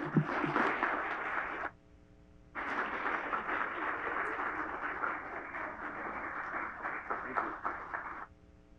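Audience applauding. The clapping drops out for about a second after the first two seconds, then resumes.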